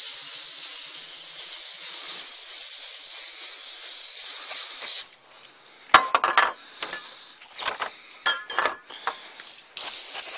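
Aerosol can of CRC MAF sensor cleaner spraying onto a dirty mass air flow sensor in a steady hiss that stops suddenly about halfway through. A few light clicks and clinks follow, then the spray hisses again just at the end.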